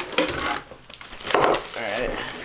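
Plastic wrapping crinkling and cardboard scraping as a plastic-wrapped subwoofer and bagged cables are lifted out of a box, with a few sudden louder rustles, the loudest about one and a half seconds in.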